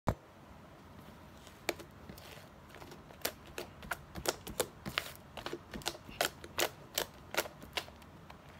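Thick lavender slime being folded and pressed by hand, giving sharp clicks and pops. The clicks are sparse at first, then come about twice a second from about three seconds in.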